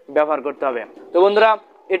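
A man speaking Bengali: only speech, in short phrases with brief pauses.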